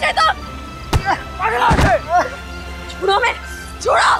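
Staged fight sound: two sharp hit thuds, about one second in and just before two seconds, amid short wordless cries and shouts of pain and effort, over background music.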